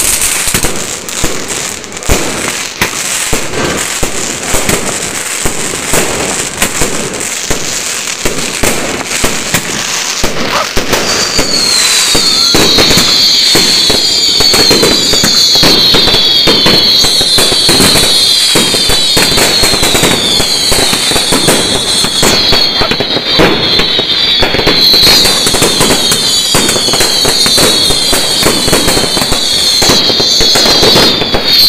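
Fireworks and firecrackers going off close by: dense, rapid crackling and popping throughout. From about a third of the way in, a run of repeated whistles, each falling in pitch, plays over the crackling.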